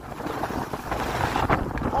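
Wind rushing over the microphone of a camera carried by a skier moving downhill, a steady rumbling buffet with a brief sharper sound about one and a half seconds in.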